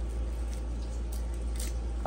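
Faint small scrapes and crackles of a knife and fingers peeling the papery skin off garlic cloves, a few short ticks, over a steady low hum.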